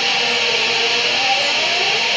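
Live electronic noise music: a loud, dense wall of hiss and static with wavering mid-pitched tones, and two falling high whistles, one at the start and one just past a second in.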